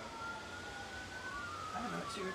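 Emergency-vehicle sirens wailing: two overlapping tones that slowly rise and fall in pitch, crossing each other.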